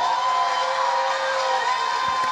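Theatre audience applauding and cheering, with a long held tone sounding over the clapping.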